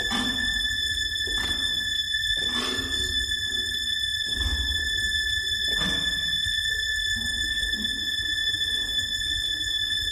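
Contemporary music for baritone saxophone and live electronics: a steady high tone with overtones is held throughout, with about five short breathy swells of noise over a low rumble.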